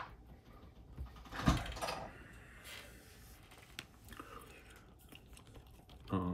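Handling noises from working polymer clay on a tabletop: a sharp knock about a second and a half in, then soft rustling and a light click or two.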